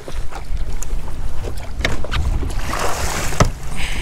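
Wind buffeting the microphone and choppy water slapping a bass boat's hull, with scattered light knocks. A hissing wash of water comes about two and a half seconds in and lasts about a second.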